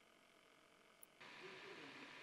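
Near silence: faint room tone, with one faint click about a second in, after which the background hiss rises slightly.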